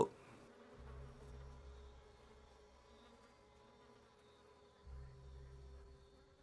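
Faint buzzing of flies, with a low hum that swells twice, once near the start and again near the end.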